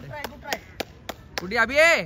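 A run of sharp claps, about three or four a second, then a loud shouted call near the end.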